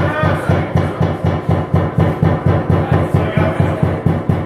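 Drum kit played live, its bass drum thumping a steady pulse of about four beats a second.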